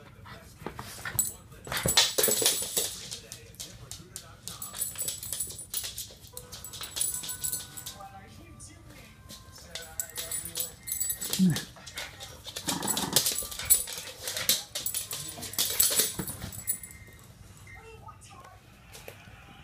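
Small dog playing rough with a plush toy, making dog noises in bursts amid rustling and thrashing of the toy against a leather couch.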